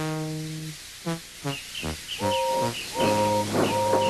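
Instrumental background music: a held note at the start, then a string of short notes, then longer held notes over a steady low tone, with a small repeating high figure above them.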